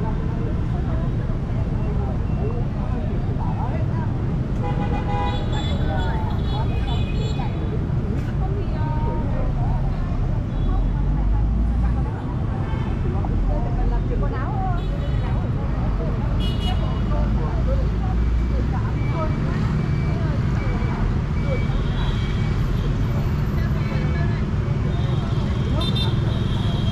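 Dense motorbike and car traffic at a city roundabout: a steady engine rumble, with a horn honking about five seconds in and several shorter honks later, and people talking nearby.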